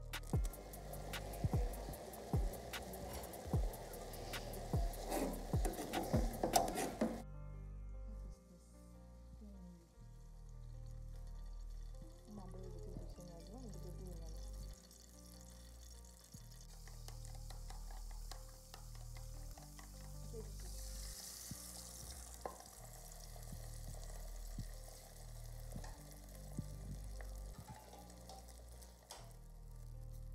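Background music with a steady, changing bass line throughout. For the first seven seconds a utensil clicks and scrapes against a metal pot as instant noodles are stirred with their seasoning. After that the cooking sound is fainter, with a brief hiss about twenty seconds in, like an egg going into hot oil, and a low sizzle of an egg frying in an aluminium pan.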